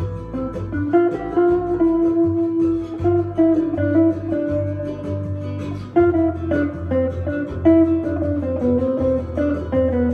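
Semi-hollow electric guitar played through a small amp, picking single-note melodic lines in A minor over a rumba groove, with a steady low bass part underneath.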